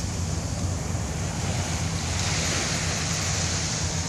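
Ocean surf breaking and washing up a sandy beach, the wash growing fuller about halfway through, with wind rumbling on the microphone.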